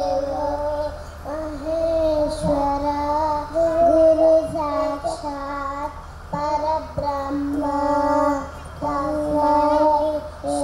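Small girls chanting a Sanskrit sloka into a microphone, in a sing-song melody of held notes broken into short phrases about a second long.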